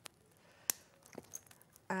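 Flush wire cutters snipping through 0.8 mm jewellery wire: one sharp snap about two-thirds of a second in, with a few faint tool clicks after.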